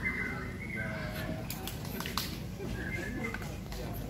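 Faint, indistinct voices of people talking, with a few short high chirps and light clicks.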